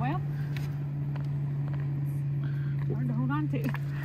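Steady low electric hum of a boat's trolling motor running, with a few faint handling clicks and a brief voice about three seconds in.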